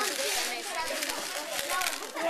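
Dried corn kernels and rice rattling and rustling against a plastic tub as a hand scoops through them, a dense crackle of many small ticks.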